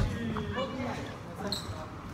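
Players' voices talking briefly in a reverberant gym hall, with a sharp knock on the wooden floor right at the start and a short high squeak about one and a half seconds in.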